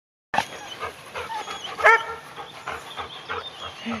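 Dog giving one short, sharp bark about two seconds in, among softer scattered sounds.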